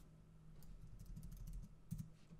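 Faint computer keyboard keystrokes: a quick run of backspace presses deleting a colour value, with a sharper key click near the end.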